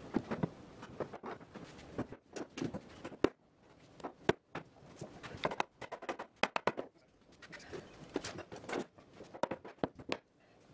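Soft-faced mallet tapping a cherry board onto its domino tenons: a run of irregular sharp knocks of wood being struck, with a few quick flurries of taps.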